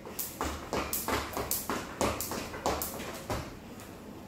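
Jump rope slapping a tiled floor in a quick even rhythm, about three skips a second, with the dull thud of feet in rubber sandals landing, stopping shortly before the end.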